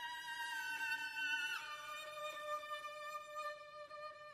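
Solo violin playing long held notes, sliding down to a lower note about a second and a half in.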